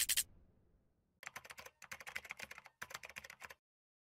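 Computer keyboard typing sound effect: three quick runs of key clicks over about two and a half seconds, after a brief noise right at the start.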